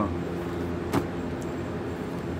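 Steady low hum of a running motor or fan, with a single sharp click about a second in.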